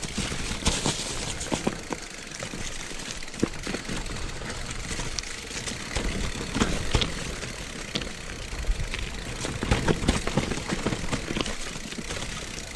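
Mountain bike rolling fast down a dirt trail covered in dry leaves: a continuous rough rush of tyres over leaves and soil, with frequent sharp knocks and rattles from the bike as it hits bumps, roots and stones.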